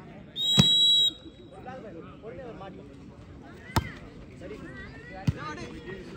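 A referee's whistle blows one short steady blast near the start, signalling the serve. Then two sharp hand strikes on a volleyball, about four and five seconds in, as the ball is served and played, with faint crowd voices underneath.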